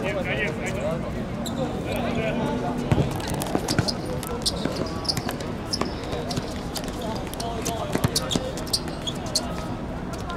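A football being kicked and bouncing on a hard outdoor court, with players' voices calling out; the sharpest kicks come about three and eight seconds in.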